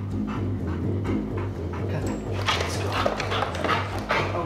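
Background music with a pulsing bass line begins, and a dog barks several times in the second half.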